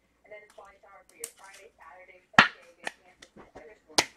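A few sharp slaps and taps from hands handling sports-card packs and cards, the loudest about two and a half seconds in, another half a second later and one at the end, over quiet speech.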